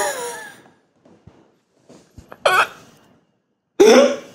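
Men laughing in bursts: a falling laugh trailing off at the start, a short breathy burst about two and a half seconds in, and a fresh outburst just before the end.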